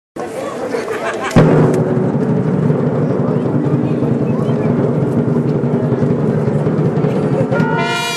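Procession brass band playing a slow march: a loud big-drum stroke about a second and a half in, then low brass holding long notes over crowd chatter, with higher brass coming in near the end.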